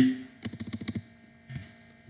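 Computer keyboard typing: a quick run of keystrokes about half a second in, then one more keystroke near the end, over a faint steady electrical hum.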